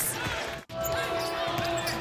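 Arena game sound from a televised college basketball game: crowd noise and court sounds. It drops out abruptly at an edit about two-thirds of a second in, and a steady held tone then sounds over the crowd.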